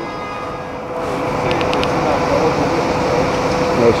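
City bus engine running with a steady whine, its noise swelling about a second in, with a few quick high ticks partway through and faint voices underneath.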